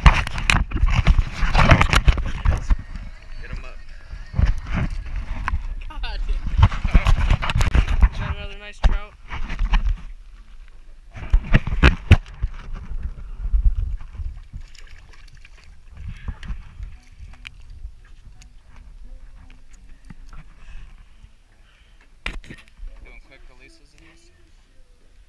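Water splashing and sloshing around an action camera dipped into the lake beside the boat, with knocks of handling, loud through the first eight seconds and again briefly around the twelfth second, then much quieter.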